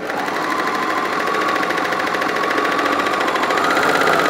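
Bernina 1150MDA overlocker (serger) running steadily under the foot pedal, stitching a wide flatlock seam with a fine, even stitch rhythm; its pitch rises slightly near the end as it speeds up.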